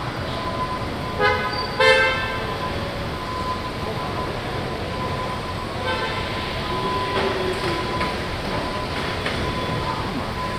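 Car-factory assembly-hall noise: a steady machinery hum with a faint high whine. It is broken by two short, loud horn toots just over a second in and a fainter toot about six seconds in.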